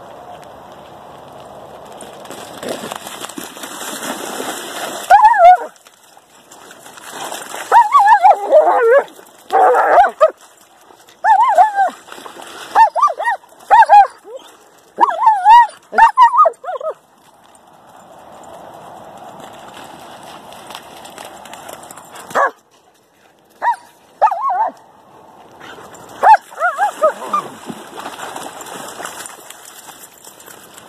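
Two German shepherds barking and yipping in rough play, in quick clusters of short sharp calls through the middle and again near the end, with splashing water between.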